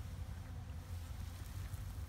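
Low, uneven rumbling noise on the microphone of a handheld camera, with a faint hiss above it.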